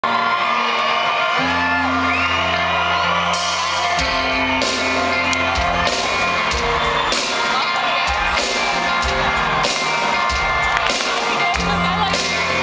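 A live rock band playing in an arena, heard from the seats: sustained electric bass and guitar chords. Drums and cymbals come in at about three to four seconds and keep a steady beat from then on.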